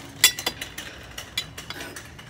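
Ceramic teapot and its lid clinking as the pot is handled and tipped up: one sharp, briefly ringing clink about a quarter second in, then a few lighter clinks.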